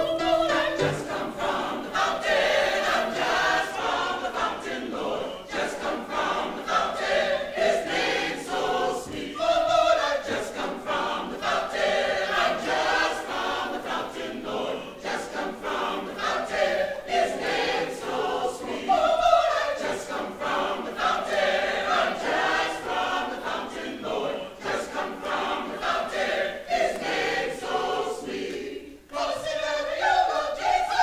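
Mixed choir of men and women singing a spiritual together, full and continuous, with a short break near the end before the voices come back in.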